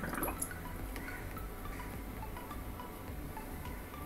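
Faint splashing and dripping of water in a plastic bucket as a hand moves a glass test tube under the surface, with scattered small ticks and drips.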